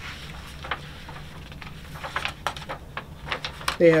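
Pages of a thick textbook being leafed through: a scatter of short paper rustles and flicks that grows busier in the second half, cut off when a man starts speaking near the end.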